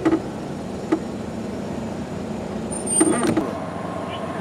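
A motor vehicle engine running steadily with a low hum, with a few brief knocks and a short bit of voice about three seconds in.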